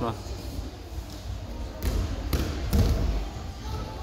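Dull thuds and footfalls of boys' feet and bodies on a padded wrestling mat, heaviest around two to three seconds in, in a large hall.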